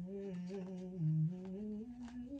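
A woman humming one long, wordless note, low and drawn out, that dips in pitch about a second in and rises toward the end.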